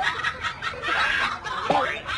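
People snickering and chuckling in short breathy bursts, mixed with a little speech.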